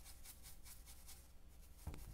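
A quiet run of quick, soft, scratchy brush strokes: a paintbrush scrubbing loose gold leaf off a painted furniture surface, with a small knock near the end.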